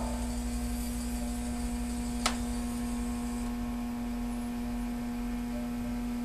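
A steady low electrical hum, with the last of a grand piano's final chord dying away at the very start. A single sharp click about two seconds in.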